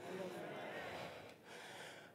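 Faint voices and room sound in a large hall, with a few soft voice-like sounds in the first second and little else.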